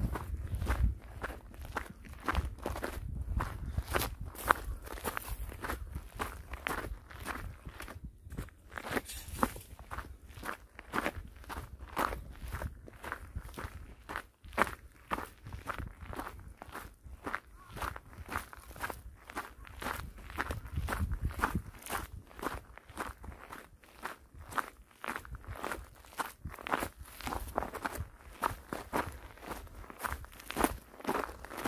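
A walker's footsteps crunching on a loose gravel trail at a steady pace, with a low rumble beneath the steps.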